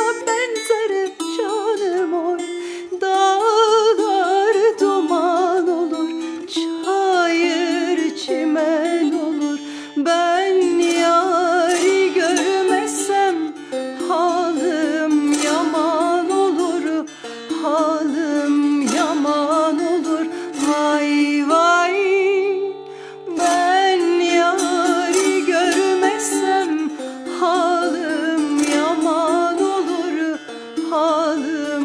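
A woman singing a Turkish folk song (türkü) in a wavering, ornamented line, accompanied by a plucked ruzba, a long-necked lute, with a steady low drone beneath. The voice drops out briefly about two-thirds of the way through, then comes back.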